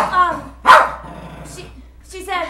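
A small dog barking: two sharp, loud barks, one right at the start and another about a second later.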